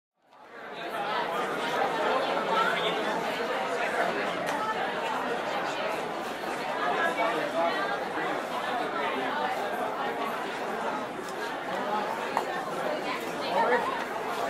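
Indistinct chatter of many overlapping voices, a steady babble with no words standing out, fading in over the first second.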